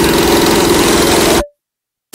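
Loud electronic dance music from a DJ set: a sustained buzzing synth tone over a fast low pulse, cutting off abruptly into dead silence about one and a half seconds in.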